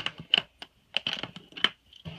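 Metal latches on a hardshell guitar case being flipped open: several sharp clicks in quick succession.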